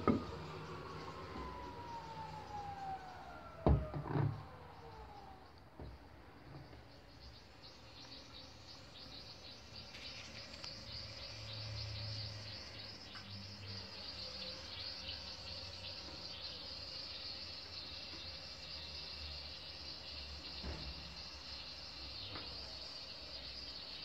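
Miele Softtronic W5820 washing machine drum motor whining down in pitch as the spinning drum coasts to a stop over the first few seconds, with a few sharp knocks at the start and about four seconds in. A faint, steady high hiss follows.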